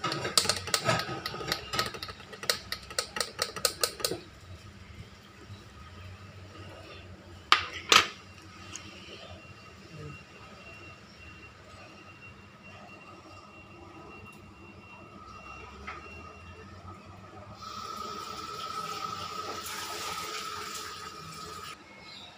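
A metal spoon stirring in a glass of orange juice, clinking rapidly against the glass for about four seconds. Two sharp knocks follow a few seconds later, and a steady hiss comes in near the end.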